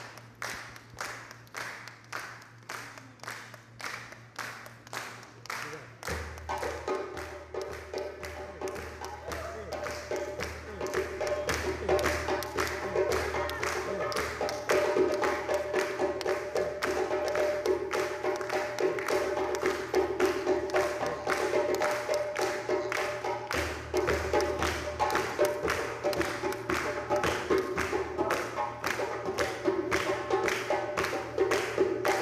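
Hand-drum music: steady drum strokes about two a second, joined about six seconds in by sustained pitched backing tones, with the drumming growing busier and louder.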